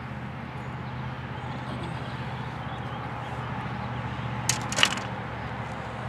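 Handling of a freshly landed channel catfish and its hook: a few sharp clicks and rattles about four and a half seconds in, over a steady low background hum.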